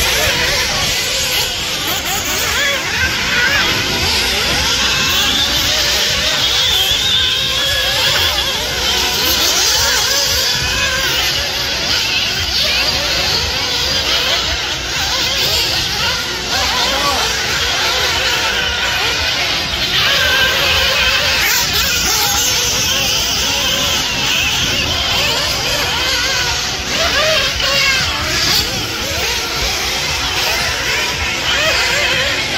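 Several radio-controlled off-road racing buggies running laps, their high-pitched motors rising and falling in pitch as they accelerate and brake.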